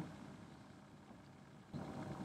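Near silence: a pause between spoken sentences, with a faint low noise starting near the end.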